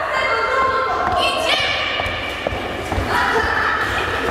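Voices in a large, echoing gym hall, with a few dull thumps against the floor.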